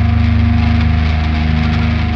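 Slamming beatdown metal: heavily distorted, downtuned guitars and bass holding low notes over a rapid, even pulse, with no vocals.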